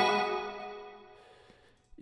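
Synth chord from a trap beat, layered with a glassy, bell-like melody sound, struck once and left to ring out, fading steadily to near silence over about a second and a half.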